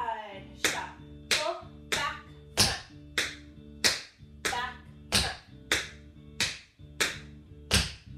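Tap shoes striking a hard floor in a steady beat during shuffle steps, about three taps every two seconds, over background music.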